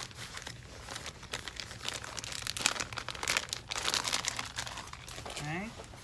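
Plastic packaging crinkling and rustling as it is handled, in a dense, irregular crackle that stops about five seconds in.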